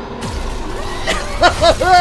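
Action-film soundtrack: music with a sudden rumbling crash about a quarter second in, then a few short rising-and-falling vocal cries near the end.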